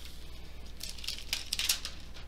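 A thin clear plastic cover sheet on a diamond painting canvas crinkling under a hand that presses and smooths it. The crinkling is a quick run of short crackles that starts about a second in.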